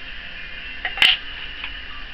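A single sharp click about a second in, over a steady hiss.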